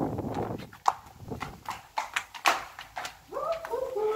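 Footsteps on a hard floor: a string of about seven sharp shoe clicks over two seconds or so. Near the end a voice-like sound begins.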